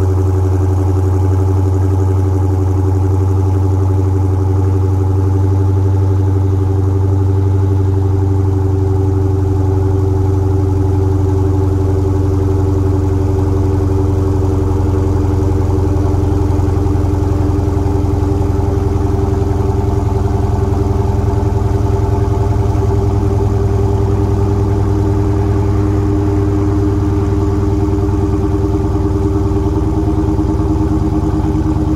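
Dodge Challenger T/A's V8 idling steadily through its exhaust shortly after a cold start, a deep, even burble. The idle eases down slightly in pitch near the end.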